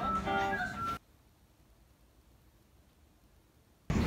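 Background music, a pitched melody, that cuts off abruptly about a second in, followed by near silence for almost three seconds; a burst of louder noisy ambient sound starts right at the end.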